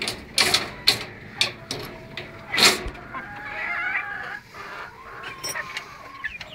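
Bantam chickens clucking in short, sharp notes, followed by a longer, wavering call about three seconds in.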